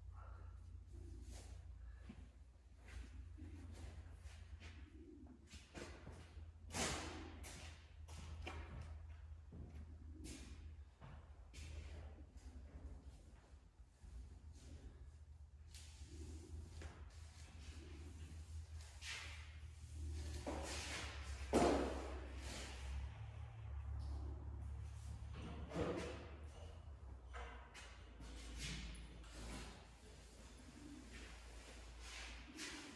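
Rope-and-pulley hoisting noises: scattered knocks, thuds and rustling as shop lights are pulled up by rope, with a louder thud about seven seconds in and the loudest about two-thirds of the way through. The knocks echo in a large steel-walled shop over a steady low hum.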